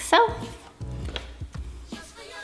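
A dog barks sharply near the start, over background music with a steady beat.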